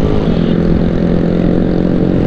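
Honda Grom's 125 cc single-cylinder engine running at a steady cruising speed, its note holding an even pitch, with wind rumbling on the microphone.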